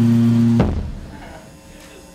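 A steady low electronic drone from the noise set, held on one pitch, cuts off abruptly with a click about half a second in; only a fading, quieter tail remains after it.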